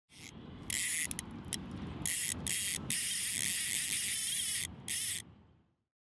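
A run of short, sharp-edged hissing, rasping noise bursts, one after another, the longest lasting nearly two seconds. They stop abruptly about three-quarters of a second before the end.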